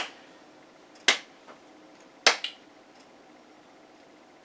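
Three sharp hand claps about a second apart, the last followed by a quick second smack.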